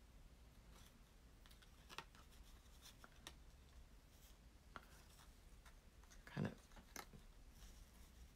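Near silence with faint, scattered ticks and rustles of fingers handling a paper label and its twine bow.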